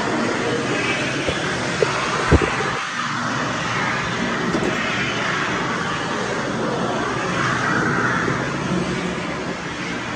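Electric hand dryer running with a loud, steady rush of air. A few sharp knocks come around two seconds in.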